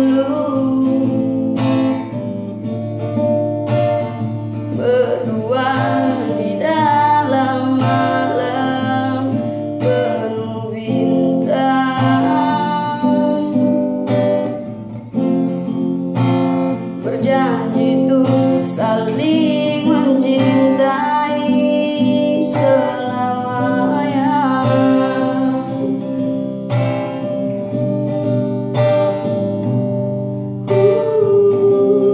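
A solo voice singing a slow song, accompanied by a strummed acoustic guitar.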